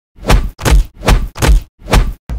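Five loud, evenly spaced impact sound effects, about two and a half a second, each with a heavy bass thump.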